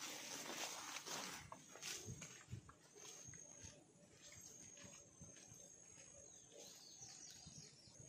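Hikers' footsteps and tall grass swishing against legs and packs, loudest in the first two seconds and fading as they walk away. From about halfway, a faint steady high buzz of insects.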